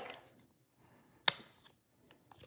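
A single sharp plastic click about a second in, with a couple of faint ticks after it: the flip-top cap of a squeeze tube of garlic paste being snapped open.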